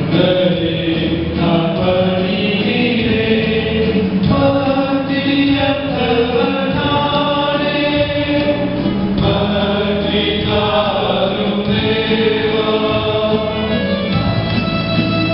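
Church choir singing a Tamil hymn, a steady, continuous sung passage with no break.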